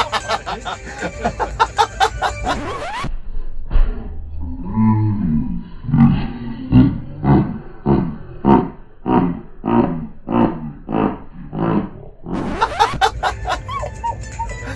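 A loud, music-backed edited sound for the first three seconds. Then a man's laughing scream is replayed slowed down: deep and drawn out, breaking into pulses about twice a second. The music-backed sound returns near the end.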